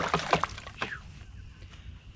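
A white bass splashing in the water as it is released from the boat: a short burst of splashes at the start, then a smaller splash about a second in.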